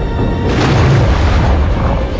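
Dramatic film score with deep booming hits over a heavy low rumble.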